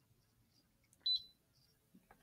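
A single short, high-pitched electronic beep about a second in, otherwise near silence.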